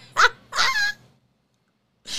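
A woman laughing in two short, high, pitch-sliding bursts. The sound cuts off abruptly about a second in.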